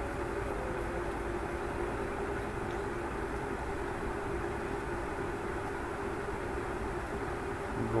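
Steady background noise with a faint, even hum, unchanging throughout; no distinct events.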